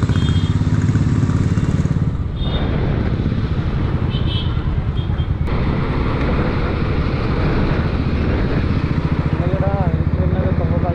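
Royal Enfield Classic 350's single-cylinder engine running under way with a steady, evenly pulsed thump, heard from the rider's seat amid road traffic. The sound changes abruptly twice, and a short wavering tone sounds near the end.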